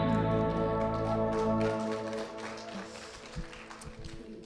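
A church worship band's final chord ringing out and fading away. The bass drops out a little under halfway through, and a few faint taps are heard near the end.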